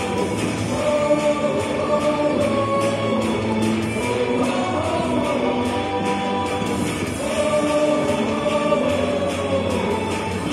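Baseball cheer song with a chorus of voices singing over a steady beat.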